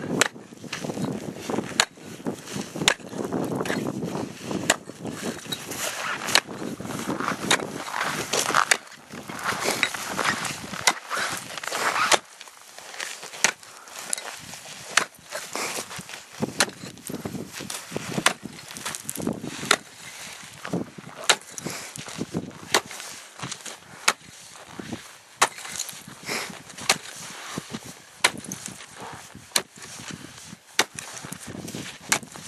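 A hand-held ice bar striking and prying in the saw cuts between sawn ice blocks, a sharp hit about once a second, loosening the blocks so they break free.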